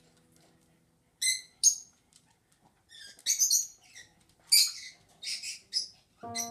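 Electronic keyboard notes fade out, then a string of short, high-pitched chirping squeaks follows. There are two near 1 s, then quick clusters in the second half.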